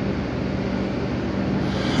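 Sand pouring from an overhead loading spout into a trailer's sand box, a steady rushing noise with a steady low hum underneath.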